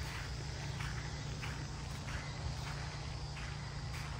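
Faint footsteps of a person walking across the turf of a tee deck, over a steady low rumble.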